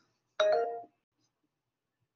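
A short two-tone chime about half a second in, with a sharp start and a fade lasting under half a second.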